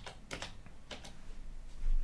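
A few separate keystrokes on a computer keyboard, spaced out rather than in a run, with a low thump near the end.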